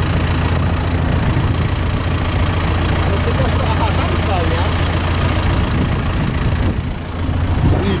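Tractor engine idling steadily with a low hum behind a hitched seed drill.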